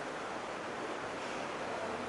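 Steady, even hiss of hall and microphone background noise, with a faint low hum.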